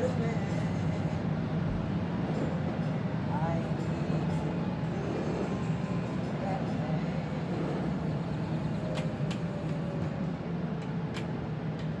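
Steady running rumble and hum of a moving DART light-rail train heard from inside the car, with faint voices.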